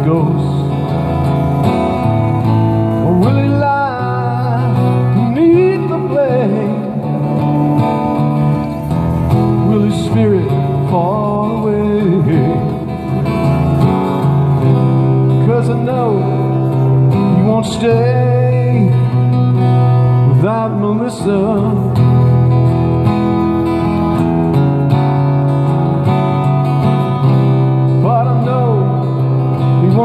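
A man singing a slow song over a strummed acoustic-electric guitar, both amplified through a PA.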